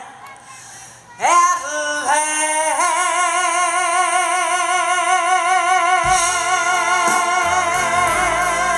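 A female singer's amplified voice, live, sweeping up about a second in into a long held note with wide vibrato, backed by the band, whose low notes come in about six seconds in.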